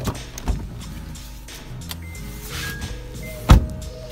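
A car door shut with a single loud thump about three and a half seconds in, after a couple of lighter knocks near the start, over background music.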